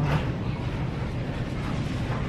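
Steady low rumble of background noise in a large store, with no distinct events.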